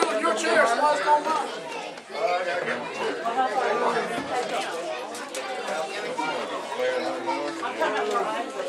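Indistinct chatter of many people talking at once, overlapping conversation with no single clear voice.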